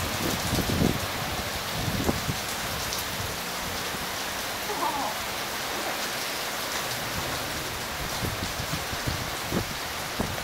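Heavy rain falling steadily on pavement and parked cars, an even hiss. There are a few low bumps on the microphone in the first two seconds.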